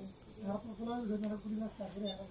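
Night insects chirping in a steady, high-pitched trill of rapid, even pulses, with a man's voice low and quiet beneath it.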